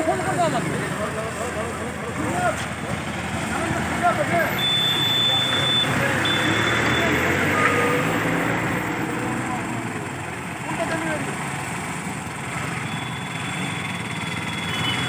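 Small auto-rickshaw engine running at idle, with people talking over it. A thin, high, steady tone sounds twice, about five and six seconds in.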